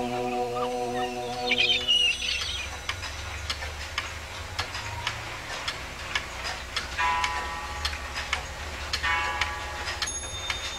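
Soft music with a few gull cries fades out about two seconds in, giving way to a grandfather clock ticking steadily at about two ticks a second. Twice in the later part, a short chime rings over the ticking.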